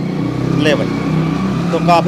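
Steady low hum of a running engine, with faint voices in the background.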